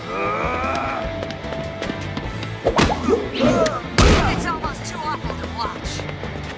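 Cartoon fight sound track: a man's pained cry at the start, then two sharp punch impacts about three and four seconds in, the second the loudest, with grunts after them, over a steady action score.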